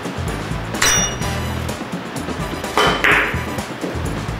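Billiard balls clicking sharply together about a second in, with a short ring, then another hard click near three seconds in, over background music with a steady bass line.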